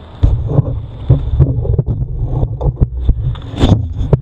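Knocks, rattles and a low rumble picked up by a handlebar-mounted camera as a fallen bicycle is lifted upright and moved, with the loudest knock near the end.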